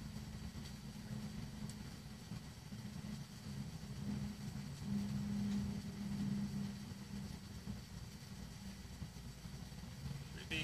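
Steady low rumbling hum with a faint low tone that grows a little louder for a couple of seconds around the middle.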